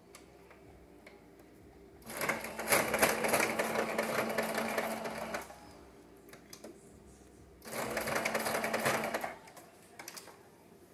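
Singer electric sewing machine stitching ribbon and fringe trim onto a shirt, in two runs: one of about three seconds starting two seconds in, and a shorter run of about a second and a half near the end. Both runs have a steady motor hum under the rapid needle stroke.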